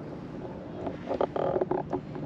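Wind buffeting the microphone, with a faint low hum underneath. A cluster of short knocks and rustles comes in the second half.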